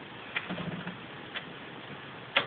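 Faint handling clicks from a small bagpipe being turned in the hands, with a brief low hum about half a second in.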